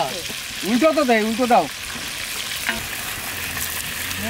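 Fish pieces deep-frying in a large wok of hot oil, sizzling steadily, while a metal slotted spoon stirs through them and lifts them out. A brief voice rises and falls about a second in.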